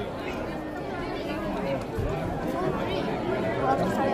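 Crowd chatter: many people talking at once, with no one voice standing out.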